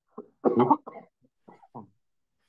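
A person coughing: one main cough about half a second in, followed by a few shorter, quieter throat sounds.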